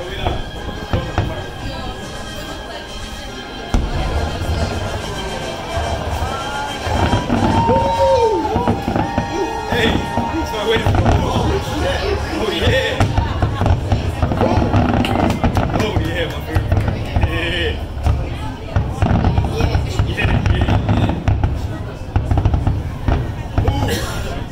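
Fireworks display: aerial shells bursting one after another in a dense run of booms and crackle, growing louder and busier about four seconds in.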